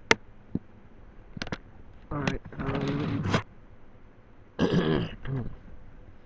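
A few sharp clicks in the first second and a half, then two short bursts of a man's voice without clear words, about two and five seconds in, picked up by a laptop's built-in microphone.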